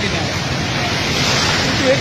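Steady rushing and sloshing of floodwater as a minivan ploughs through it on a flooded street.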